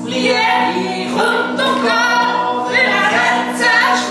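Unaccompanied vocal music: voices singing with vibrato over a steadily held low note.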